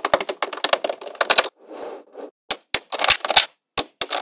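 Small magnetic balls clicking and snapping against one another in quick irregular runs of clicks, with a brief softer, noisier stretch just before the halfway point.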